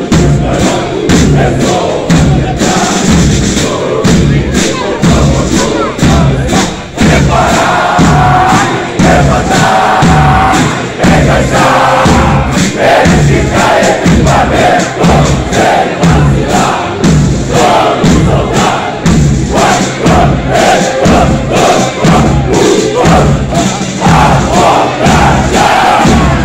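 A formation of marching soldiers chanting in unison, loud, over a steady beat of about one and a half strokes a second.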